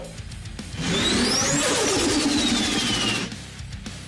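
Dubbed mech motor sound effect whirring up as turbo mode is switched on, running loud for about two seconds with a high whine that climbs and then falls away before it cuts off, over background music.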